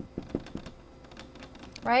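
Dry-erase marker writing on a whiteboard: a quick run of light clicks and taps as a word is written, densest in the first second.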